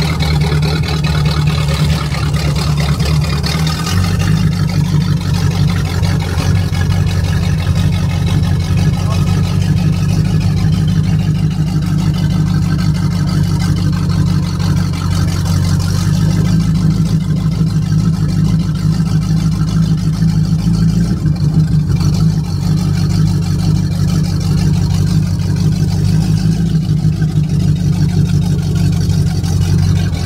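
Old hot rod's engine running at low speed, heard from inside its open cab as it cruises slowly. A steady low rumble whose pitch shifts about four seconds in.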